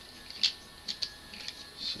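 A few light clicks and taps from small tools and parts being handled at a workbench, the sharpest about half a second in and two softer ones about a second in.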